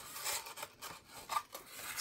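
A sheet of P400 wet-and-dry sandpaper being cut up into small pieces by hand: faint, short scraping and rasping sounds, the loudest a little past the middle.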